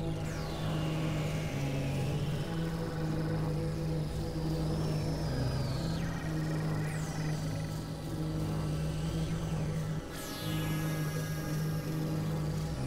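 Experimental electronic synthesizer drone: a steady low held tone that steps between two close pitches, with high whistling sweeps falling in pitch several times over it.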